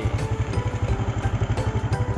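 Honda Supra X125 single-cylinder four-stroke engine idling, a steady rapid low putter of about a dozen beats a second, with background music playing over it.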